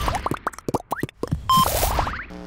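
Cartoon-style outro sound effects: a rapid string of short rising bloops, then a brief whoosh with a short tone about a second and a half in, and a final run of rising bloops.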